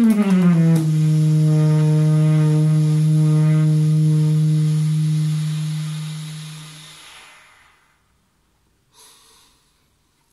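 Solo saxophone sliding down into a low final note, held for about six seconds and then fading out. A short, soft breathy noise follows about nine seconds in.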